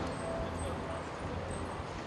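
City street traffic: a steady low rumble of passing vehicles.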